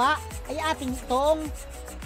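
A man speaking in short, halting phrases, over a steady low rumble and a rubbing noise as he handles a bundle of steel rods.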